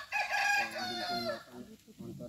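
A rooster crowing once, a single high call lasting about a second and a half, louder than the nearby talk.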